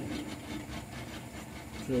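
Drain cleaning machine running: a steady motor hum with the cable turning in the drain line.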